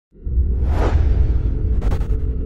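Intro logo sound effects: a deep bass rumble starts suddenly, a whoosh sweeps through about half a second in, and a short sharp swish comes near the end.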